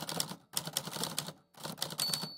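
Typewriter keys clacking rapidly in three quick runs, with brief pauses between them.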